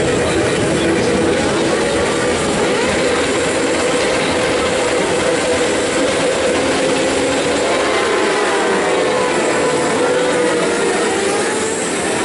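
A grid of 600cc Supersport race motorcycles revving hard together at the race start. In the later seconds there are rising and falling engine notes as bikes accelerate away off the line.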